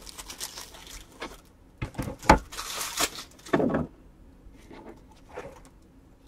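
Foil trading-card pack wrappers and cards being handled: crinkling and rustling with a few sharp clicks and knocks, busiest two to four seconds in, then fainter.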